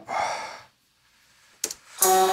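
A man sighing: one breathy exhale lasting about half a second. It is followed by silence and a brief double click near the end.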